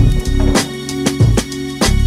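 Background music with a steady drum beat over held instrument tones.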